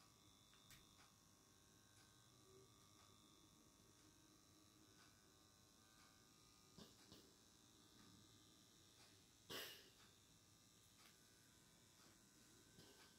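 Near silence: room tone, with a few faint clicks and one short puff of breathy noise about three-quarters of the way through.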